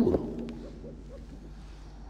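A man's voice trails off with a falling pitch at the very start, then a pause of faint room tone with a low steady hum and one small click about half a second in.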